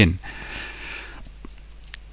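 A man's breath drawn in for about a second, right after a single spoken word, as he pauses before the next sentence; a faint steady low hum remains after it.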